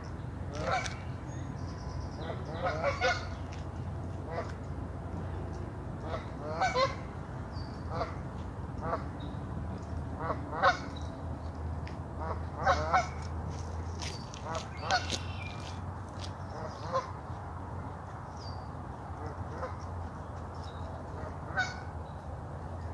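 Canada geese honking, about a dozen calls scattered throughout, some in quick pairs, the loudest around the middle, over a steady low background rumble.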